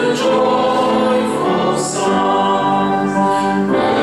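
Congregation singing a hymn together, many voices holding notes that change from one to the next.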